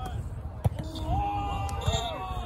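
A volleyball being hit during play: two sharp smacks about a second apart, with players' voices calling out between them.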